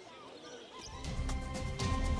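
A faint background hush, then a news programme's transition jingle comes in about a second in: low, beating music that swells, with steady higher tones and a couple of sharp hits.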